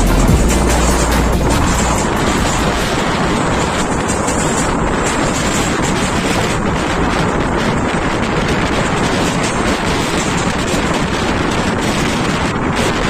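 Wind buffeting the microphone over the steady running noise of a passenger train, heard from the window of a moving coach.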